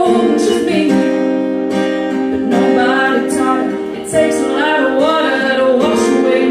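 A woman singing into a microphone while strumming chords on an acoustic guitar.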